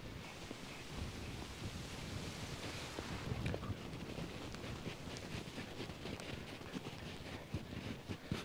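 Footsteps crunching in snow while walking, with wind rumbling on the microphone.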